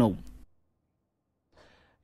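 A man's speech trails off, then about a second of dead silence, then a faint breath just before the next speaker starts.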